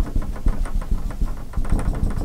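Dry-erase marker drawing a dashed line on a whiteboard: a quick, irregular run of short taps and strokes, several a second.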